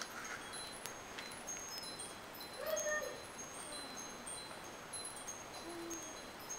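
Faint, high-pitched tinkling: many short ringing tones at several different pitches, scattered through the whole stretch. A brief voice sound comes about halfway in.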